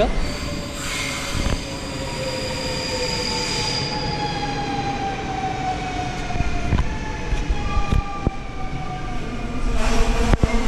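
Dutch double-deck Intercity train running along the platform, its motor whine falling slowly and steadily in pitch as it slows to a stop, over the rumble of the wheels, with a few short clicks near the end.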